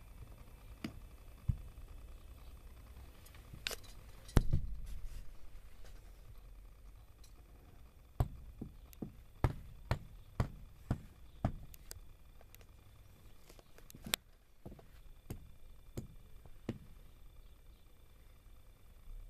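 Scattered small clicks and knocks over a faint low rumble, with a louder thump about four seconds in and a run of clicks about two a second in the middle.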